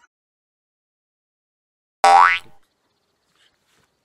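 Near silence, then about halfway through a single cartoon-style 'boing' sound effect: one loud, quick tone sweeping sharply up in pitch, lasting about half a second.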